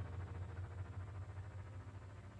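Electronic music fading out: a low sustained synth bass tone with faint higher notes, getting steadily quieter.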